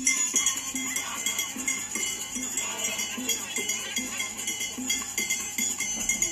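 Audio of a mapouka dance clip: fast, busy metallic percussion with a steady jangle, like bells or shakers, and a crowd's voices underneath.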